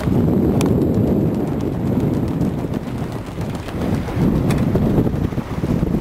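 Wind buffeting the microphone aboard a sailboat under way, a loud gusting rumble, with a couple of light clicks.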